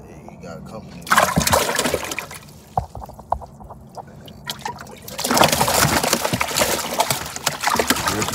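A bluegill splashing in the water of a plastic cooler as it is dropped in and thrashes. There is a short bout of splashing about a second in and a longer one from about five seconds in.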